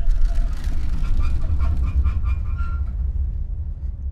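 Sound-effect aftermath of a distant explosion: a deep rumble that slowly dies away, with faint higher tones over it for a moment midway.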